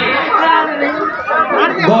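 Speech only: several people talking at once, one voice over a microphone.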